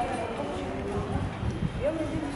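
Footsteps on an unpaved dirt road: a few dull thuds, with people talking in the background.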